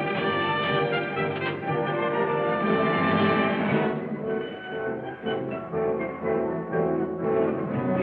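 Orchestral music playing sustained chords, thinning and softening about halfway through, then filling out again near the end.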